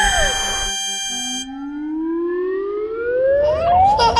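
Cartoon sound effects. A short falling whistle-like note and a held chord that stops about a second and a half in, then a long, smooth rising whistle over the last three seconds, like a slide whistle going up.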